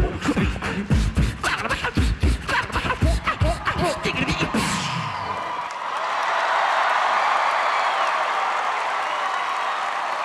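A four-man beatbox group performing a vocal drum beat of deep kick sounds and sharp snare-like clicks, which stops about halfway through. The audience then breaks into applause and cheering that swells and carries on.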